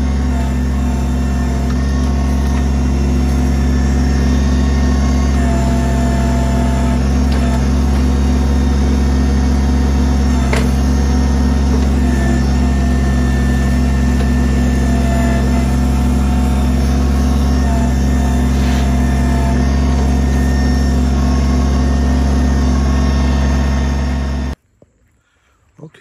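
Kubota BX23S tractor-loader-backhoe's three-cylinder diesel engine running steadily while its backhoe digs out a tree stump, with brief higher tones and a click over it. The sound cuts off abruptly near the end.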